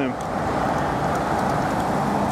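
A car, a dark SUV, driving past close by, its tyre and engine noise a steady rush.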